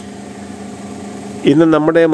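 A low, steady background hum in a pause between phrases. About a second and a half in, a person's voice starts again.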